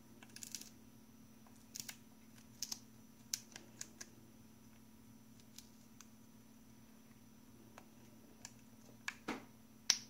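An African grey parrot's beak and mouth making sparse, sharp clicks as it bites at and eats watermelon flesh. The clicks are irregular and a few seconds apart at times, with a cluster of louder ones near the end.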